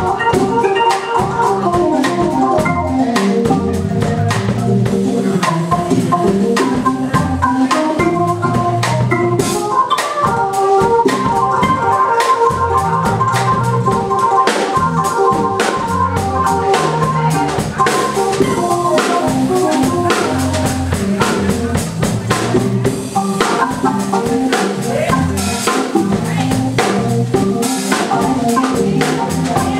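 Live band playing an instrumental passage: sustained organ-toned keyboard chords over a steady drum kit beat.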